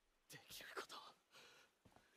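A voice speaking softly, close to a whisper, in two short phrases, faint against near silence.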